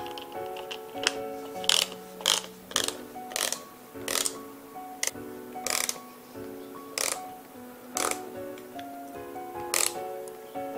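Background music with a steady melody, over sharp clicks from a ratchet torque wrench turning SPD-SL cleat bolts on a cycling shoe, an irregular click about every second as the bolts are tightened.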